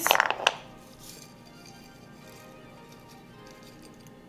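Faint background music with steady held tones. About half a second in there is a single sharp click from a glass jar of dried chiles being handled.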